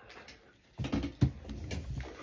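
Rustling and a few sharp knocks of cards being handled on a wooden desk close to the microphone, the loudest knock about a second and a quarter in.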